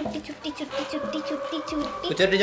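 A person's voice in a fast, evenly repeated sing-song chant, about six or seven syllables a second.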